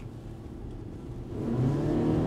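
Interior road noise of a moving Geely Monjaro, low at first; about one and a half seconds in, a steady engine note comes up and grows louder as the car accelerates.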